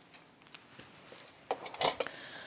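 A felt-tip marker being handled and uncapped: a quiet stretch, then a few short clicks and a scuff in the last half second.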